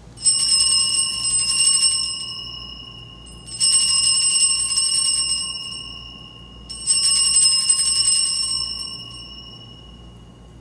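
Altar bells (Sanctus bells) rung three times, each a bright shaken jangle that fades away, marking the elevation of the consecrated host at Mass.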